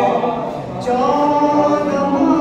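A man singing a Shia devotional poem (manqabat) into a microphone without instruments, in long, held, wavering notes, with a short break for breath about three quarters of a second in.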